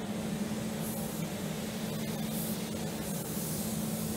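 Automotive paint spray gun hissing in several short spurts, over the steady hum of the paint booth's fans.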